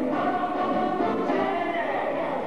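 A group of people singing together, several voices overlapping.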